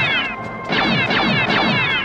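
Cartoon laser-gun sound effects: a quick run of about five zaps, each falling in pitch, over background music.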